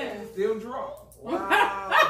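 Women laughing and exclaiming, in short high-pitched voiced bursts with a brief lull about a second in.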